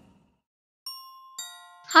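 Two bell-like chime notes, one a little under a second in and a second, richer one about half a second later, both ringing on. A voice begins right at the end.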